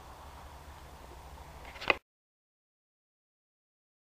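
Wind rumbling on the microphone for about two seconds, ending in one sharp, loud click of the camera being handled as the recording cuts off; then dead silence.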